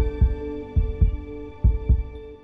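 Heartbeat sound effect in a title music bed: three deep double thumps, lub-dub, a little under a second apart, over a held synthesizer chord.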